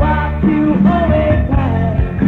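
A 1983 demo recording by an English rock band: a male lead voice sings over the full band, holding a note and then sliding between pitches.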